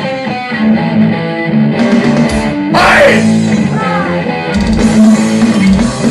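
A live rock band playing an instrumental passage led by an electric guitar riff, with held chords that change every second or so and no vocals.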